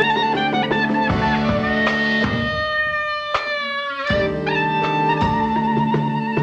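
Klezmer band playing, a clarinet leading over drum kit and accompaniment. Around the middle the band thins out to a single held high note that slides down, then the full band comes back in about four seconds in, the lead holding a wavering note.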